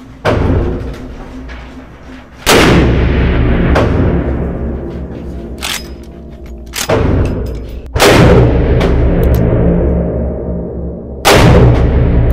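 Several loud 454 Casull gunshots from a 20-inch barrel, each a sudden crack followed by a long echoing decay in an indoor range.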